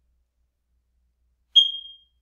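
A single high-pitched electronic beep about one and a half seconds in. It starts sharply and fades over about half a second, after near silence.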